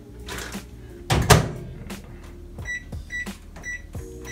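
Microwave oven being set: a loud clunk just over a second in as the door shuts, then four short keypad beeps at one pitch as the cooking time is entered.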